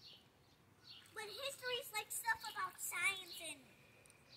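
Faint, indistinct voices from about a second in until shortly before the end, with no clear splash standing out.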